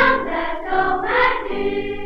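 Children's choir singing a Dutch song, played from a circa-1930 78 rpm shellac record.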